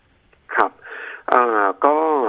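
A man speaking over a telephone line, his voice thin and narrow-band, starting about half a second in after a brief near-silent pause.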